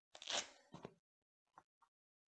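A brief crunchy rustle of a padded sparring glove and clothing being handled, about half a second in, followed by two short softer rustles.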